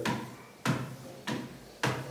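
A child's footsteps on a motorized treadmill's running deck: four thuds, each about two-thirds of a second apart, one per stride of a slow walk.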